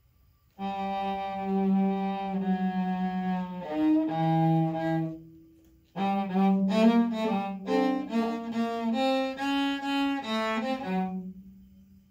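Solo cello bowed: a first phrase of long held notes, a short break about halfway, then a second phrase of shorter, moving notes that dies away near the end.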